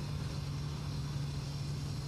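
Faint, steady traffic noise from vehicles on the adjoining roadway, over a constant low hum.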